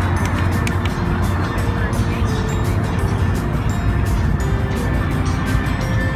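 Background music with a steady low engine rumble underneath, from a large vehicle running close by.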